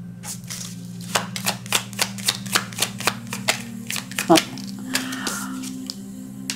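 A tarot deck being shuffled by hand: a quick, even run of light card snaps, about four a second, over a low steady hum.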